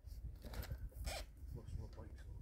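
Two short zip-like rasps, one about half a second in and a stronger one just after a second, as nylon straps are pulled tight to fasten a bag onto a bike's handlebars.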